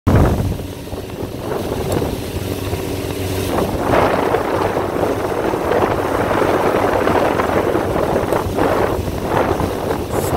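Towing motorboat's engine running steadily, with wind on the microphone and the rush of water from the wake. The engine's hum is clearest for the first few seconds, then the wind and water rush grows louder and covers it.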